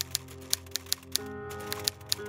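Typewriter key-strike sound effect: a run of sharp, irregular clacks as on-screen text is typed out, over steady background music.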